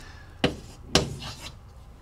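Chalk writing on a chalkboard: two short, sharp strokes about half a second apart.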